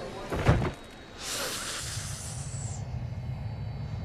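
A heavy thump about half a second in, a body falling onto the tarmac, followed by a high hiss lasting about a second and a half over a steady low rumble of airport background.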